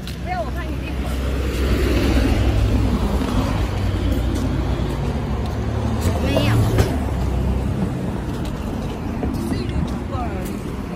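Road traffic passing close by: the low engine rumble and tyre noise of a truck and cars, swelling about two seconds in, peaking again around six and a half seconds, then easing off near the end.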